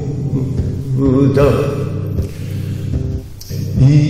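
Vocal music: a voice singing in a drawn-out, chant-like way over a steady low accompaniment, with a brief break a little after three seconds.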